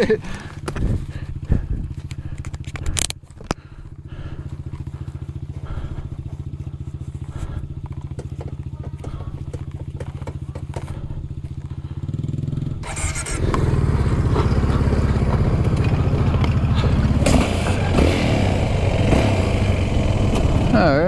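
Yamaha WR426F single-cylinder four-stroke dirt bike idling with a steady, even low pulse, with a few knocks and clicks. About two-thirds of the way through, the engine opens up and the bike rides off on gravel, much louder, with tyre and wind noise.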